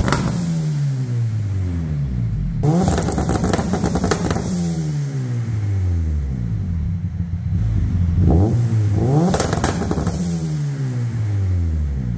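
Turbocharged Honda Civic engine being revved hard, its pitch falling off and climbing again several times. Two clusters of rapid sharp pops come from the exhaust, one about three seconds in and one near ten seconds.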